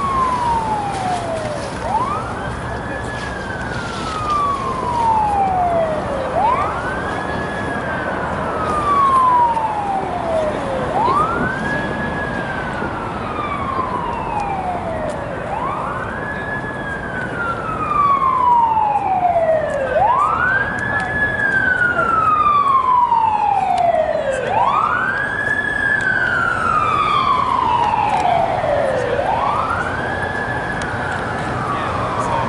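Emergency vehicle siren sounding a slow wail. Each cycle rises quickly to a high pitch and slides slowly back down, repeating about every four and a half seconds.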